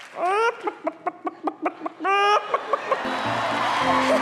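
Chicken clucking: a rising squawk, a quick run of short clucks, a second rising squawk and a few more clucks. Music comes in about three seconds in.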